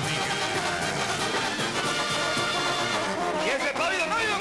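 Live banda music: a Mexican brass band of trumpets, trombones and tuba playing steadily.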